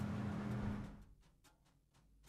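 Steady low hum with hiss, room tone fading out about a second in, followed by a few faint clicks.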